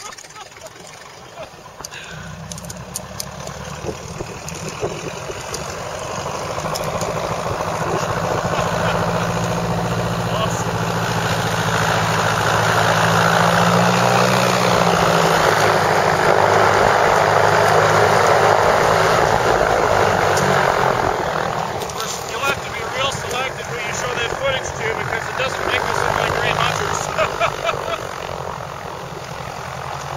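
Piper Super Cub's engine and propeller droning as the plane flies low overhead: it comes in about two seconds in, grows steadily louder to a peak around the middle, then eases off. Voices are heard near the end.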